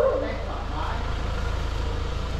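A 2020 Hyundai Tucson's diesel engine idling, heard as a low steady rumble, with faint voices about a second in.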